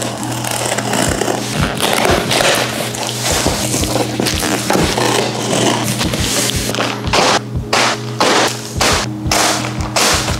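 Background music with steady low tones, over a knife scraping and slicing through the packing tape of a cardboard box and the cardboard flaps being torn and pulled open. Sharper separate strokes come in the last few seconds.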